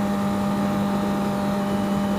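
Yamaha R6 sport bike's inline-four engine running at a steady cruise, a constant even hum, with wind rushing over the helmet-mounted microphone.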